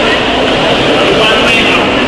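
Loud, steady background noise with indistinct voices mixed in.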